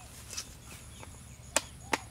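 Two sharp knocks, about a third of a second apart, near the end, over a faint, steady, high buzz.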